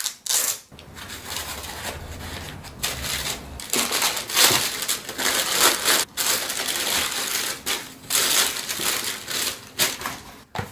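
Crinkling and rustling of shoe packaging, paper and a plastic bag, handled and crumpled by hand in irregular bursts that grow busier about four seconds in.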